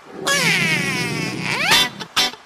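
A cartoon chick character's high-pitched voice: one long cry that slowly falls in pitch, then a short rising whoop near the end.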